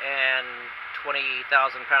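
A man speaking over a steady background hiss.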